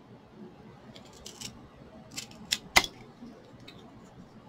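Tin snips cutting through a jumbo wooden craft stick: a few faint clicks about a second in, then sharp cracking snaps as the blades bite through the wood. The loudest snap comes just before the three-second mark.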